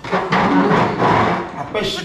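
A man's loud, rough, drawn-out vocal outburst of disgust lasting about a second and a half, with other voices around it.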